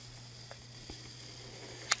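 Faint scratching and ticking of a pencil working into wet cold wax and oil paint on a smooth panel, over a low steady hum, with a brief sharp click near the end.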